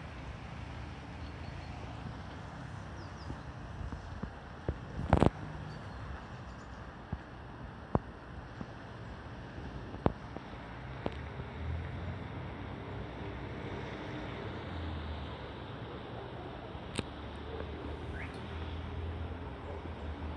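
Steady outdoor ambience: a low rumble of distant town traffic under wind hiss, broken by a few sharp clicks, the loudest about five seconds in.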